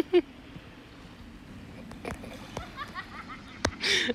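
A short laugh at the very start, then the soft, steady wash of small waves on a sandy beach, with faint voices near the end.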